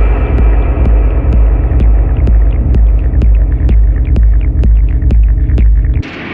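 Electronic techno track: a heavy, throbbing sub-bass drone under a dense layered texture, with sharp ticks several times a second that come faster toward the end, before the loud part drops away abruptly at the very end.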